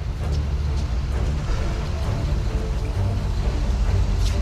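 Low, tense background music with a steady deep drone.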